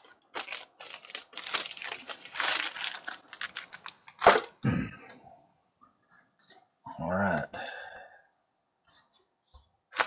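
A baseball card pack wrapper being torn open and crinkled for the first few seconds, then one sharp knock about four seconds in. A few light clicks and taps of cards being handled come near the end.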